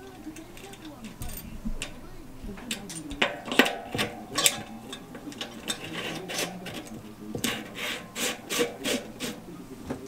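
Metal parts at a bicycle's rear hub clinking and scraping as a single-speed sprocket, spacers and lock ring are fitted onto the freehub by hand. The clicks are sharp and irregular, and come thicker after the first few seconds.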